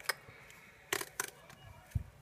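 Scissors cutting into a thick cardboard paper towel tube wrapped in glued paper: a sharp snip at the start and two more close together about a second in, then a dull thump near the end.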